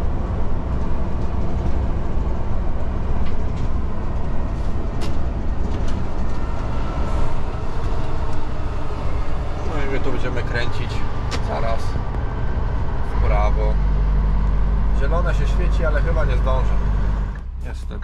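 Scania R380 tipper truck's diesel engine and road noise heard inside the cab while driving. A deeper, steady drone sets in about two-thirds of the way through and cuts off abruptly just before the end.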